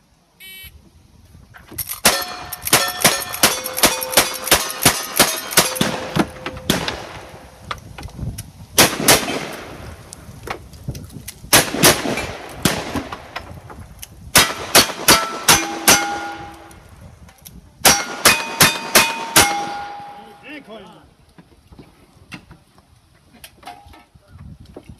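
A short electronic beep, then strings of gunshots with the clang and ring of hit steel targets: about ten rapid shots, a few spaced ones, then two runs of five. These are the rapid strings of a cowboy action shooting stage fired with single-action style guns.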